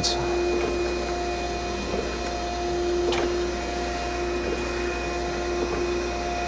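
Okamoto ACC-1632DX hydraulic surface grinder running: a steady machine hum with a mid-pitched tone, with a couple of faint clicks about two and three seconds in.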